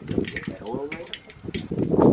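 People talking, with a steady rushing hiss underneath the voices.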